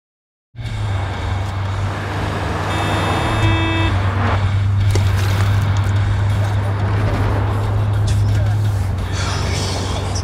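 Steady low drone of a car in motion heard from inside the cabin, with engine and road noise. About three seconds in, a brief steady tone with overtones sounds for about a second.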